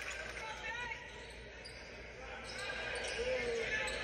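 Quiet game sound from a high-school basketball game in a gym: a ball bouncing on the hardwood floor, with faint voices echoing in the large hall.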